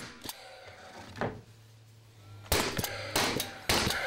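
Paslode Impulse cordless framing nailer firing nails into 2x4 framing: a few lighter knocks, then three loud sharp shots in the last second and a half, with a low steady hum between.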